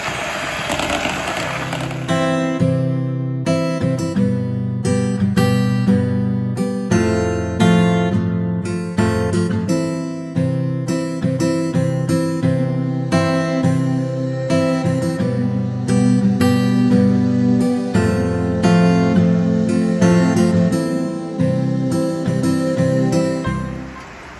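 Electric hand mixer beating batter, cut off about two seconds in by instrumental background music: plucked and strummed acoustic guitar.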